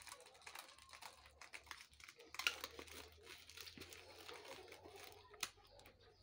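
Faint crinkling and rustling of a thin clear plastic bag being opened and handled, in irregular crackles, sharpest about two and a half seconds in and again near the end.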